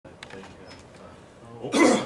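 A man coughs once, a short, loud cough near the end, with faint room tone before it.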